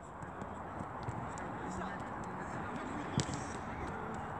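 Light, quick footsteps and soft ball touches of young players dribbling footballs on artificial turf, with one sharper touch about three seconds in.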